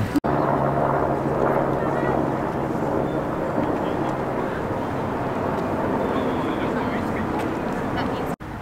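A short laugh, then steady outdoor background noise.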